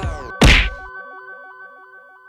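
Edited intro sound effect: a loud, sharp hit about half a second in, cutting off the background music, followed by a short run of falling synth notes that fade out.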